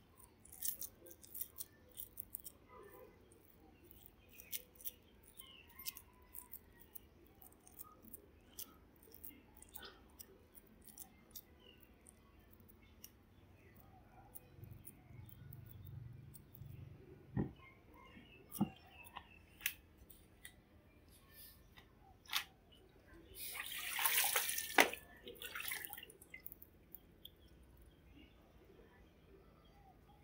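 Faint handling sounds of hands packing a moist tofu filling into a hollowed pumpkin: sparse soft clicks and squishes, with a louder burst of scraping noise lasting about two seconds near the end.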